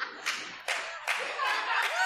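Audience clapping in irregular, scattered claps amid some laughter.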